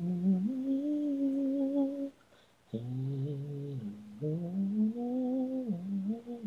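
A single unaccompanied voice singing a wordless melody in long held notes with vibrato. It breaks off for about half a second around two seconds in, and briefly again near four seconds.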